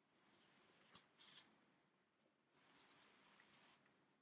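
Near silence with faint rustling of a sewing needle working through wool rib stitches and the yarn being drawn through them. There is a short louder scratch just after one second in and a longer soft hiss in the second half.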